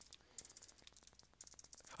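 Near silence: room tone with faint, scattered clicks.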